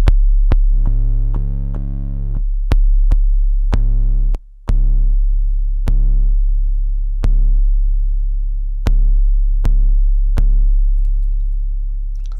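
A distorted 808 bass from the Drum Synth plugin on an Akai MPC One, playing long low notes under drum-machine hits in a beat. The distortion threshold is being turned as it plays, so the bass's upper overtones swell and fade. The bass breaks off briefly about four seconds in.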